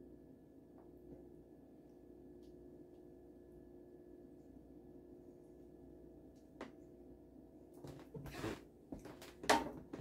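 Quiet room tone with a steady faint hum while thick sauce is poured slowly from a can, making almost no sound. Near the end come a few knocks and clatter as the emptied metal sauce can is set down on the shelf-top counter.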